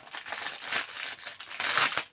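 Clear plastic packaging bag crinkling as it is pulled open and slid off a wooden embroidery hoop, loudest near the end.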